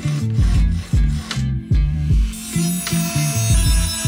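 Hand file rasping in strokes across the edges of a metal motorcycle fork stabilizer held in a vise, smoothing off sharp edges, mostly in the first half. Background music with a steady bass line runs under it and is the loudest sound.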